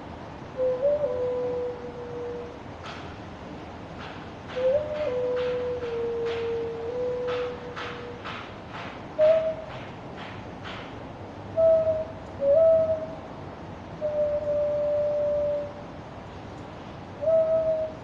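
Xun, a Chinese clay vessel flute, playing a slow melody of long held notes, each lasting one to two seconds, several beginning with a quick upward grace note.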